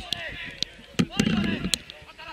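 Footballers shouting to each other on the pitch, with several sharp knocks of the ball being kicked, the loudest about halfway.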